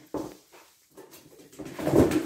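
A log being handled and set into a wood stove's firebox, with rustling that builds to a sharp knock at the end.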